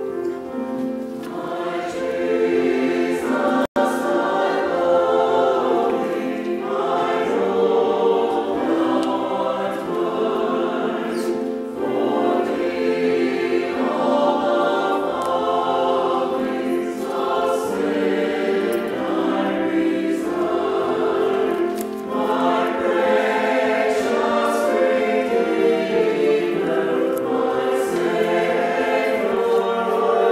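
Small mixed church choir of men's and women's voices singing a sacred anthem in parts with keyboard accompaniment. The sound cuts out for an instant a little under four seconds in.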